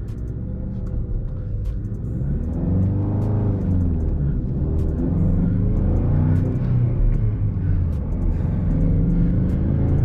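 2016 Ford Mustang EcoBoost's turbocharged 2.3-litre four-cylinder engine, heard from inside the cabin, accelerating through the gears of its manual gearbox. The revs climb three times, dropping back at each upshift.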